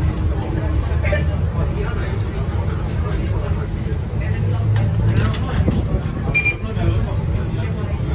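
Cabin sound of a MAN NL323F A22 Euro 6 diesel single-decker bus moving slowly: a steady low rumble of engine and drivetrain, with a short high beep about six seconds in.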